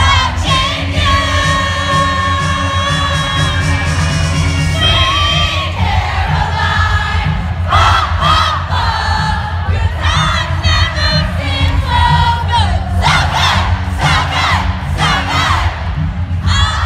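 Live concert heard from among the audience: amplified music with a heavy, constant bass, with long held sung notes in the first few seconds. After that the crowd sings and screams along, many voices rising and falling together.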